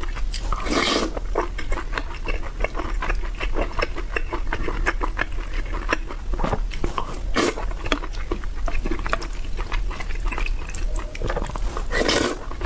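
Close-miked eating sounds: wet chewing and lip-smacking of a mouthful of braised pork and rice, a dense run of small clicks. There are a few louder slurps, one about a second in, one past the middle, and one near the end as a glass noodle is sucked in.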